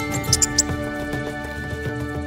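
Sustained orchestral background music, with about four quick high-pitched squeaks in the first second, the chirping of a coati.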